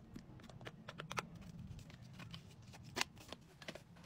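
Plastic skincare jars and lids being handled: scattered light clicks and taps, with a sharper click about three seconds in.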